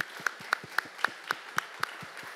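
Light applause: evenly paced hand claps, about four a second, that stop just before the end.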